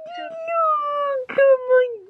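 Bernese mountain dog puppy whining over a phone video call, coming through the phone's speaker: one long drawn-out note that slowly falls in pitch, then a click and a shorter note.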